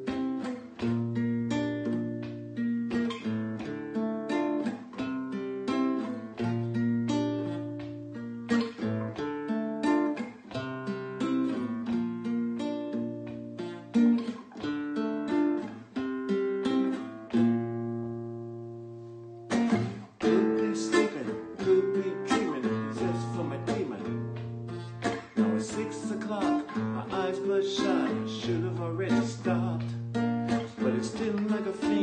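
Solo acoustic guitar playing a song's intro: picked chords over a repeating bass line. About seventeen seconds in, a chord is left to ring and fade, and the playing starts again with a hard strum about two seconds later.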